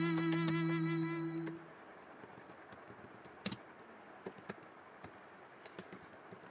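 A long held sung note ends about a second and a half in. After it come faint, scattered clicks of typing on a computer keyboard.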